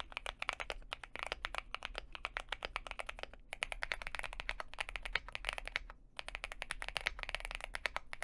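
Fast typing on a Cidoo V75 mechanical keyboard, a dense run of key clacks. It is the pre-built, factory-lubed board at first, then after a short break about three and a half seconds in, a custom-built one with blue keycaps.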